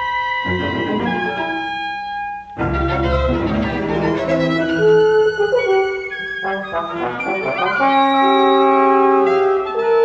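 Chamber ensemble playing modern concert music: overlapping held notes at many pitches, with a sudden loud attack and a low thud about two and a half seconds in.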